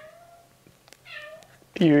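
A pet's short, high-pitched cry about a second in.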